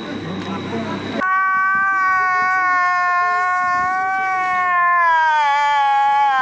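Street noise with people's voices for about the first second, then a sudden switch to one long, high wail of a man crying, slowly falling in pitch and wavering near the end.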